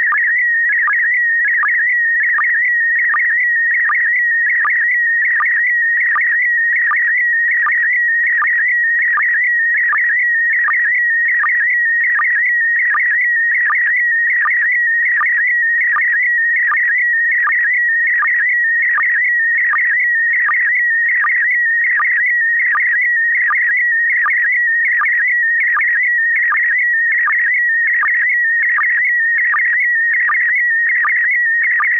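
Slow-scan TV (SSTV) image signal: a steady warbling tone around 2 kHz, broken by a short drop in pitch about three times every two seconds, the line sync pulses as the picture is sent line by line.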